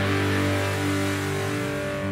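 Live rock band's closing chord ringing out: electric guitars and bass guitar holding one sustained chord that slowly gets quieter, with no drum strikes.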